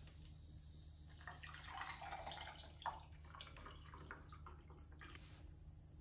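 Faint sound of bottled water being poured into a drinking glass for a second or two around the middle, ending in a light click, with a fainter hiss afterwards.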